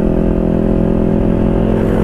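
Motorcycle engine running steadily at cruising speed, heard from the rider's seat, with a low rumble of road and wind noise.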